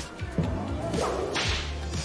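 A whoosh sound effect: a hiss that swells for about a second and then drops away, over quiet background music.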